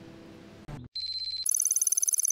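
A soft piano score fades out. About a second in, after a short break, a rapid electronic trill like a phone ringtone starts: one high tone, then half a second later a louder, higher warble of several tones.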